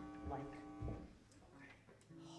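A spoken word, with a single steady instrument note ringing underneath for about a second; then low room sound.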